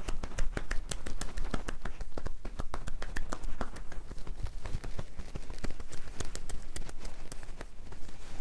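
Massage therapist's hands striking a man's shoulders and upper back through a cotton T-shirt in quick percussive tapotement: an irregular patter of sharp pats, several a second, continuing throughout.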